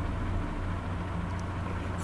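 Steady low hum with a faint hiss: background room noise of the recording, with a few faint ticks about one and a half seconds in.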